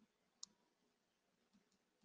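A single faint computer-mouse click about half a second in, the click that advances the slide, with a couple of fainter ticks later, all in near silence.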